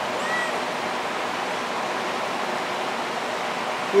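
Steady rushing hiss of rain, unbroken throughout, with a faint short high tone about a third of a second in.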